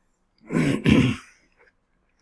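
A man clearing his throat with a short, rough cough in two quick parts, about half a second in.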